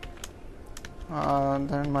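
A few separate computer keyboard keystrokes click in the first second as a folder name is typed. A man's voice then takes over about a second in.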